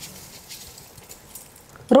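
Soaked seeraga samba rice sliding from a steel strainer into a pot of boiling water and gravy: a faint soft pouring hiss with a few light taps.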